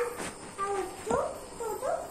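A toddler's short, high-pitched vocal sounds: little squeals and babbling calls that slide up and down in pitch, with a couple of light knocks.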